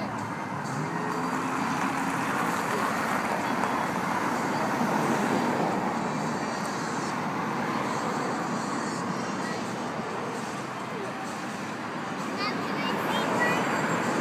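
Steady noise of road traffic going by.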